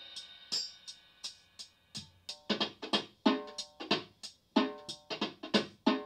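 BeatBuddy drum pedal playing its Ballad beat at 84 BPM on the Percussion drum set, heard through a Roland Cube guitar amp. The ringing tail of the intro fill fades, then a steady beat of pitched hand-percussion hits comes in about two seconds in, roughly one hit every two thirds of a second.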